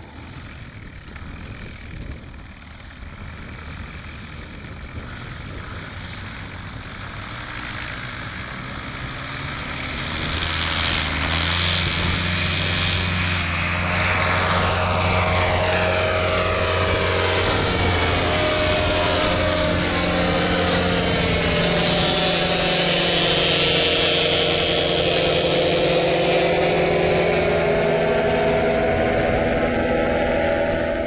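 Paramotor (powered paraglider) engine and propeller flying by low and close, faint at first and growing loud about ten seconds in, then staying loud with its tone shifting as it passes.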